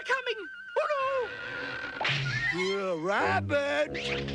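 Cartoon rabbit character's wordless effort sounds, short gasps and grunts and then a long strained cry that dips and rises in pitch about three seconds in, as he heaves on a rope to haul a heavily loaded cart. Orchestral background music plays underneath.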